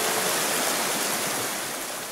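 Water rushing steadily over a small waterfall on a fast-flowing river, a full even roar of white water that eases off slightly near the end.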